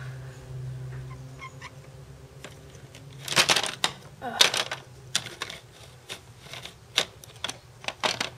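Sharp plastic clicks and handling noise of Lego minifigures and bricks being pulled off and pressed onto studs. A loud cluster of clicks comes about three seconds in, then single clicks every half second or so.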